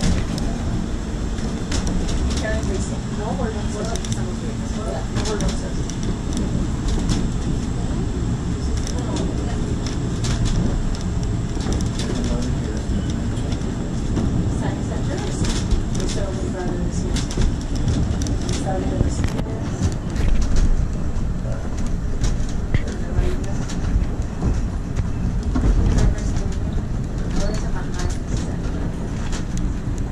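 Duquesne Incline funicular car climbing its track on the hauling cable: a steady low rumble with frequent irregular clicks and rattles from the car and rails.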